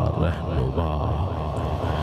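A man chanting devotional verses in a drawn-out, melodic voice into a microphone, over a steady low hum.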